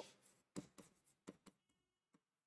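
Faint ticks and scratches of a pen writing on an interactive whiteboard screen: a handful of soft strokes close together, with near silence in between.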